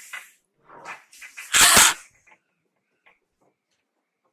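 A short, loud burst of breath noise from a person, such as a forceful cough, about one and a half seconds in, after a few fainter breathy sounds.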